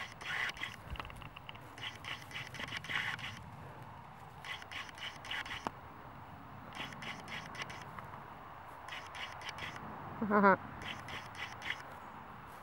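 Footsteps crunching and scraping on a loose pile of gravelly fill dirt, a cluster of crackles every second or two. About ten seconds in there is a short vocal sound from the walker.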